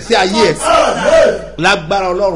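A man's voice shouting loudly in fervent prayer: a long strained cry through the first second and a half, then a shorter phrase near the end.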